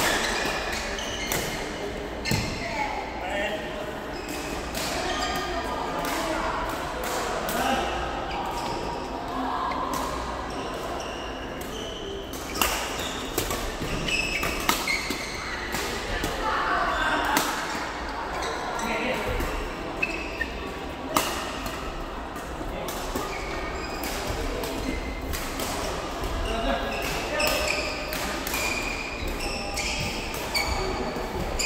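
Badminton rackets striking a shuttlecock in a doubles rally: sharp cracks at irregular intervals, echoing in a large hall, over the chatter of voices from nearby courts.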